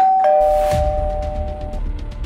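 Two-note doorbell chime, a higher note then a lower one a moment later, both ringing on together for nearly two seconds before stopping. A low music beat comes in under it.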